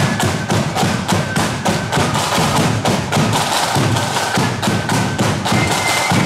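Marching flute band playing a tune over heavy drumming: shrill, held flute notes over rapid, driving drum strikes.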